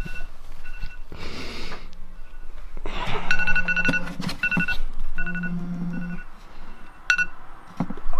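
Mobile phone alarm going off: short high electronic beeps, repeated in quick runs, with a low buzzing that comes and goes, as of the phone vibrating. Soft rustling of bedding in between.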